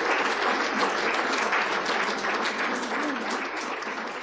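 Audience applauding at the close of a talk, a dense clatter of many hands clapping that starts to thin and fade near the end.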